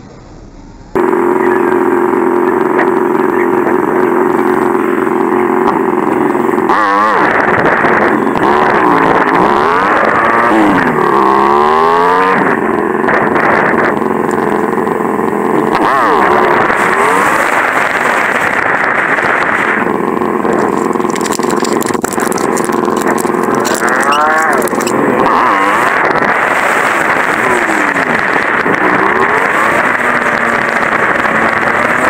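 Motorcycle engine heard from the riding bike's camera, pulling away and revving up through the gears, its pitch climbing and then dropping at each shift several times, over a steady rush of wind and road noise.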